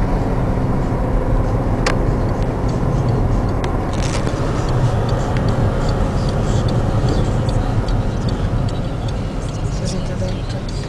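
A car driving slowly along a country lane, heard from inside the cabin: steady low engine and tyre rumble, with a couple of sharp clicks about two and four seconds in.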